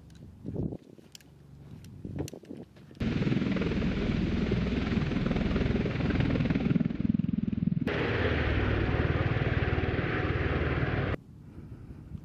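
MV-22 Osprey tiltrotor in helicopter mode hovering close to the ground: a loud, steady rotor beat with rushing downwash noise, starting abruptly about three seconds in and cutting off shortly before the end. Before it, a few faint sharp clicks.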